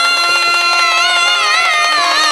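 A woman singing one long, high held note in a Bengali baul folk song. The note is steady at first and wavers with vibrato from about halfway. Under it runs instrumental accompaniment with a steady drone and soft percussion.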